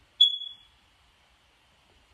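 A smoke alarm gives a single short, high-pitched chirp about a quarter second in, fading within half a second. The alarm is faulty and waiting to be fixed.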